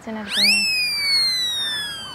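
A whistle-like tone swoops up sharply, then glides slowly and steadily down for about two seconds, like a slide-whistle comedy sound effect. A voice is heard briefly at the start.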